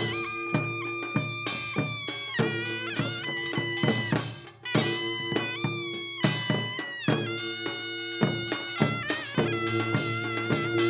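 Korean traditional drum-dance music: a taepyeongso (Korean shawm) plays a nasal, wavering melody over rhythmic strokes of buk barrel drums and janggu, with a short break in the melody about halfway through.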